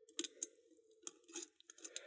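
Faint, scattered metallic clicks and scratches of a lock pick and wire tensioner working the pins inside an Adlake railroad padlock, about half a dozen small ticks over two seconds.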